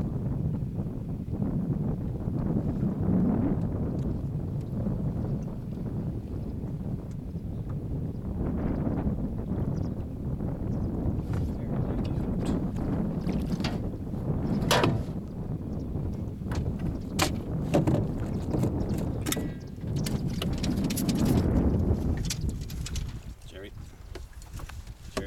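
Wind rumbling on the microphone. A scattered run of sharp clicks and knocks comes through in the second half.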